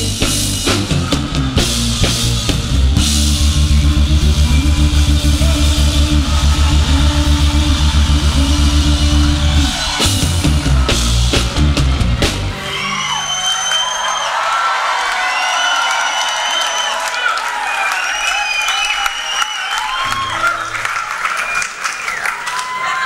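Live band with bass guitar and drum kit playing the end of a song at a steady beat. About twelve seconds in, the band stops and the audience cheers and whistles.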